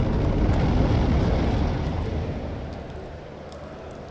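A deep rumbling noise, loud for about two seconds and then fading away.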